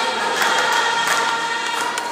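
A group of voices singing along to loud, upbeat music with a steady beat.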